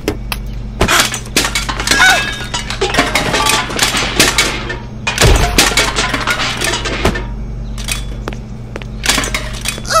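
Cartoon sound effects of groceries tumbling out of an overstuffed refrigerator: a dense run of knocks, clinks and breaking sounds, with a heavy thump about five seconds in, over a steady low hum. The clatter thins out after about seven seconds and picks up again near the end.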